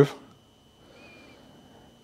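The end of a man's spoken word, then quiet room tone with a faint steady high whine and one brief, faint high chirp about a second in.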